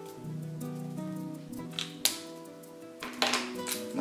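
Soft background music of held keyboard-like notes, with a few short scratches and clicks from marker pens on paper about two seconds in and again near the end.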